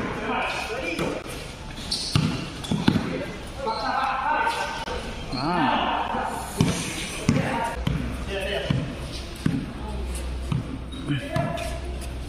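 A basketball bouncing on a hard court floor during a game, with irregular thuds scattered throughout and players' voices calling out between them.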